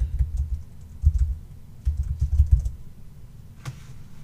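Typing on a computer keyboard: quick runs of keystrokes that come through mostly as dull low thumps, in three short bursts that stop a little under three seconds in.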